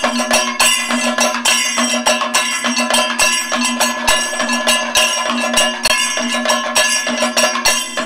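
Kathakali percussion ensemble playing a fast, dense run of drum strokes, with ringing metal cymbals and gong over a steady drone.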